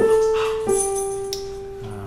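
Digital piano played slowly: two single melody notes, the second a step lower about two-thirds of a second in, each held and fading away.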